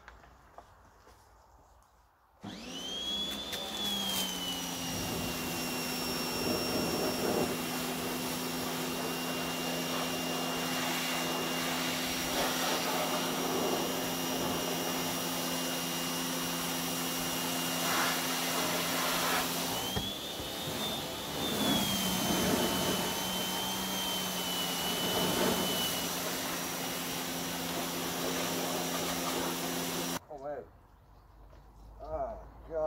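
Pressure washer starting about two seconds in and running steadily: a high whine over low hums and the hiss of the water jet blasting degreaser and oily grime off a diesel engine bay. Near two-thirds of the way through the whine rises briefly, then settles again, and the sound stops suddenly at the end.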